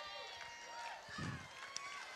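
A low-level pause in speech: the last of a man's voice dies away in a large hall, and faint voices sound briefly about a second in. No other distinct sound.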